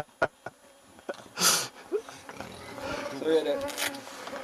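Mosquitoes buzzing close to the microphone, their whine wavering as they fly past, under a man's voice, with one short hiss about a second and a half in.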